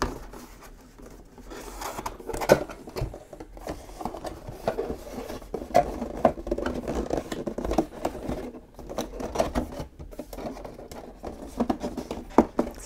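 Thick printed cardboard panels being folded and handled: irregular scrapes, rubs and small taps, with a sharper knock about two and a half seconds in.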